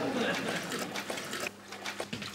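A string-head mop being worked up and down in a plastic bucket of water, giving a fast, rough, rhythmic swishing that dies down about a second and a half in.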